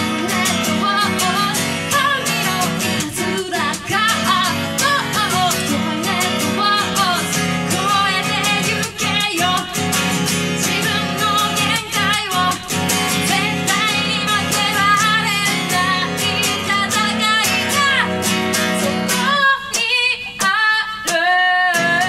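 A woman singing a song in Japanese-language live performance style while strumming an acoustic guitar, her voice carried over steady strummed chords.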